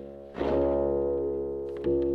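La Diantenne 2.0, a self-built electronic instrument, playing sustained pitched notes. A new note starts about half a second in and another just before the end, each held and slowly fading.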